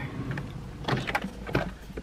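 White storage-unit drawers being handled: one slides shut and the next is tugged at, scraping, with a few light knocks, a drawer that sticks rather than opening freely.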